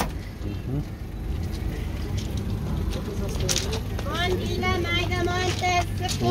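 People talking over a steady low rumble; the voices become clearer from about four seconds in.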